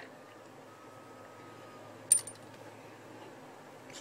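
One sharp, light click about halfway through, with a few faint ticks after it, as paracord is worked on a plastic knife sheath; otherwise only quiet room tone.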